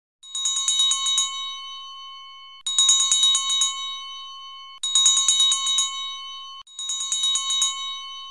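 A small bell rung in four quick bursts of rapid strokes, about two seconds apart. Each burst rings on and fades before the next begins.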